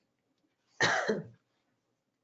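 A woman's single short cough about a second in, lasting about half a second.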